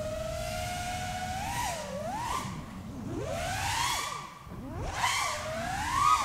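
NewBeeDrone Smoov 2306 1750 kV brushless motors on a 6S FPV quadcopter whining. The pitch holds steady at first, then swoops up and down with the throttle, dips briefly about four seconds in, and climbs again near the end.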